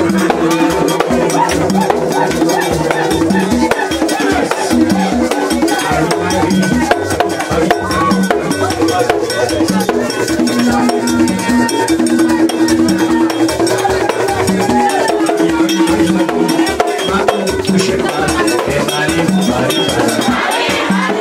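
Haitian Vodou ceremony music: drums and struck percussion keep a steady, fast beat under sung chanting, with no break.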